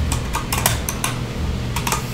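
Computer keyboard keys clicking in an irregular run of keystrokes as code is entered.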